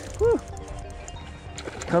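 Spinning reel being cranked against a hooked bass on light line, under steady background music. A short voiced grunt comes about a quarter second in.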